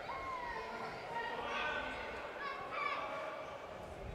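Faint shouts and calls from players on court, with a little echo in a large sports hall.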